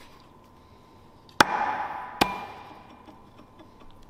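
Two sharp metallic knocks a little under a second apart, each ringing briefly: the adapter-kit flywheel being knocked into place on the BMW M52's crankshaft flange over its alignment dowels.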